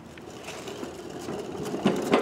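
Small wheels of a pushed cart rattling over asphalt, growing louder, with a few sharp knocks near the end.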